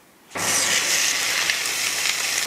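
Thin slices of marbled beef sizzling in a hot nonstick frying pan: a steady hiss that starts abruptly about a third of a second in, with a faint low hum underneath.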